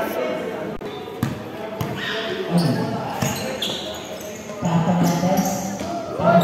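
A basketball bouncing on a hard outdoor court: three sharp bounces about half a second apart in the first two seconds. Voices of players and onlookers call out over it and grow louder in the second half.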